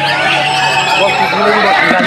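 Many white-rumped shamas singing at once: a dense tangle of rapid whistles, trills and pitch glides, with people's voices mixed in.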